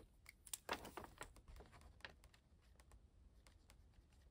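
Faint scratching and light ticks of a pen writing on a paper calendar page, strongest in the first two seconds and dying away toward the end.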